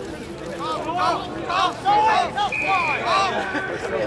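Several voices shouting and calling out at once during a rugby scrum, with one short steady whistle note about two and a half seconds in.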